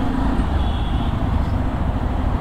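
A motorcycle riding at road speed through city traffic: its engine runs steadily under a constant wash of wind and road noise.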